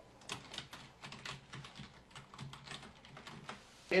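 Typing on a computer keyboard: a quick, uneven run of keystrokes, fairly quiet.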